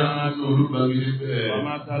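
A man's voice chanting a repeated devotional phrase, holding long sung syllables on a steady pitch, heard through a microphone.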